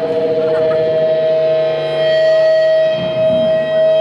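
Loud amplified feedback from the band's gear: one steady high tone held on a single pitch.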